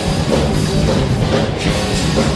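Live rock band playing loud and steady: full drum kit with cymbals, electric guitar and bass.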